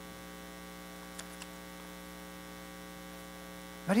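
Steady electrical mains hum with many overtones, the kind picked up through a sound system, plus two faint ticks a little over a second in.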